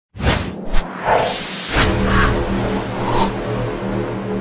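Logo-animation sound effects: quick whooshes in the first second and a rising sweep, then a low held music chord that carries on, with one more whoosh near the end.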